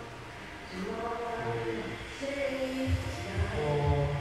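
Background music with a sung voice holding steady, drawn-out notes; low, repeated thuds come in about three seconds in.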